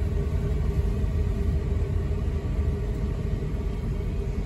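Steady low rumble of a car's engine and tyres heard from inside the cabin as it rolls slowly up to a junction, with a faint steady hum.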